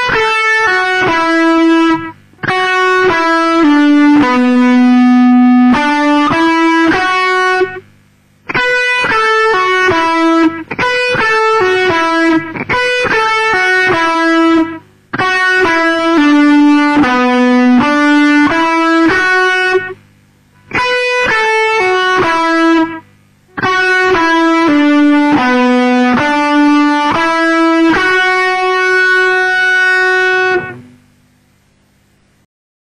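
Electric guitar, a sunburst Les Paul-style solid-body, playing a single-note melodic solo line in B minor. The notes come in short phrases with brief pauses between them, and the last phrase ends on one long held note.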